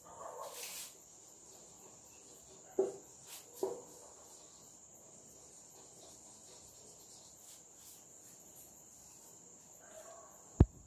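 Faint whiteboard marker writing: a short scratchy stroke at the start, then two sharp taps of the marker against the board about three seconds in. A steady high-pitched cricket trill runs underneath.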